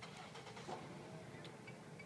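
Faint background: a low steady hum with a few soft clicks.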